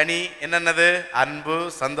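A man's voice preaching in Tamil through a microphone, with some long, drawn-out syllables.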